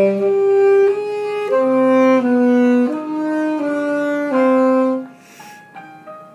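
Saxophone playing a slow phrase of held notes over a piano accompaniment, the phrase ending about five seconds in. A short breathy hiss follows, then the piano plays on alone.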